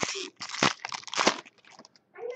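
A plastic-foil trading-card pack wrapper being torn open and crinkled in the hands, in four or five short crackling rips.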